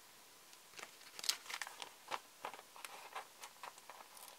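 Paper sticker sheet being handled: small crackles and crinkles as a sticker is peeled off its backing and pressed onto a planner page, a quick irregular run of clicks starting just under a second in.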